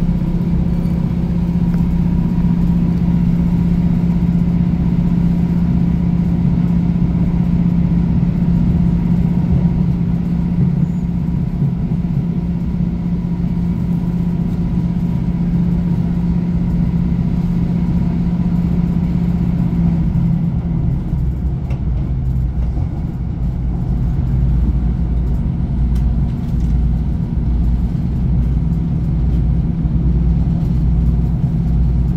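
Cabin sound of a British Rail Class 156 Super Sprinter diesel multiple unit under way, heard from inside the passenger saloon: the underfloor Cummins diesel engine runs with a steady hum over wheel-and-rail rumble. About twenty seconds in the engine hum fades, leaving a lower, pulsing rumble.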